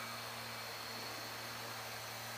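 Faint, steady hum and whine of a small toy quadcopter's motors and propellers in flight, under an even hiss.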